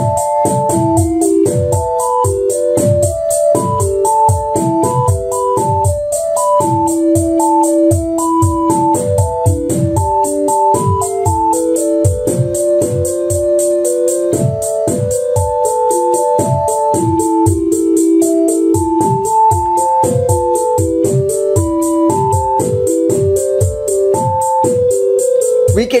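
Eurorack modular patch playing a generated sequence: a Plaits synth voice steps through a melody of short notes over analog kick and snare drum patches, all triggered by a Mutable Instruments Marbles random sampler. With Marbles' Deja Vu knob turned to the left, the melody and the drum pattern keep changing instead of repeating a loop.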